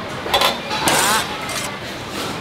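Indistinct background voices over a steady noisy hum, with a few brief brighter rustles or clinks.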